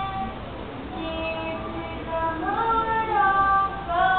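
Children singing a praise song into a microphone, holding long notes, with the melody rising about halfway through.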